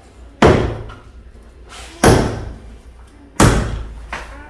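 Three heavy hammer blows on an interior wall being demolished, about a second and a half apart, each with a short ringing tail.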